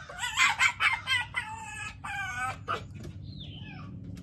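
Pet fox whining in a quick run of short, high-pitched chattering calls, complaining as it is told to settle. The calls fade out after about two and a half seconds, and one fainter call follows.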